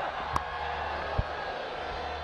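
Steady stadium crowd murmur. About a third of a second in, a sharp crack of cricket bat on ball sends it down to third man. A dull low thump follows a little after a second.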